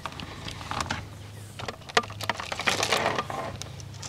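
Insulated electrical wire being fed by hand into a PVC conduit fitting: irregular scrapes, rustles and light clicks of cable sliding against plastic, over a low steady hum.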